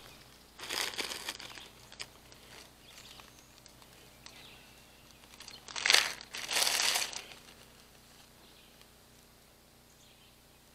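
Crinkling, rustling handling noise in two short bursts, one about a second in and a longer one around six to seven seconds in, with a single small click in between.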